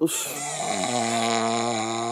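A woman snoring: one long, steady, droning snore.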